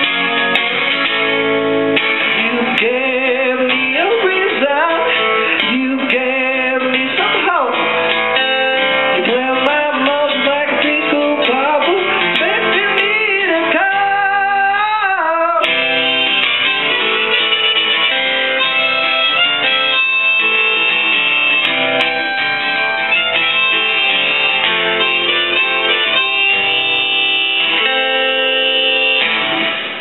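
Live acoustic guitar strummed steadily, with a man singing through the first half; in the second half a harmonica on a neck rack plays over the guitar. The song ends right at the end.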